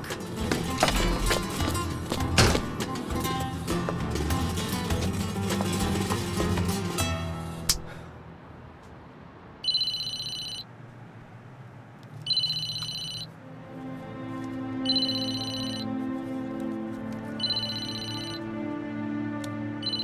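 Lively background music with sharp beats, cutting off suddenly about eight seconds in. Then a mobile phone rings with an electronic ringtone: four rings about two and a half seconds apart, over soft background music.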